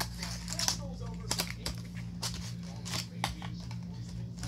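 A retail cardboard box and its plastic packaging being opened by hand to take out a 2.5-inch SSD: irregular crinkling and sharp plastic clicks, with a steady low hum underneath.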